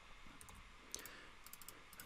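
A few faint computer keyboard key clicks, as characters are deleted from a text field.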